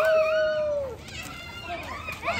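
A high-pitched shout: one voice swoops up into a long held call that lasts about a second and then trails off, followed by faint voices.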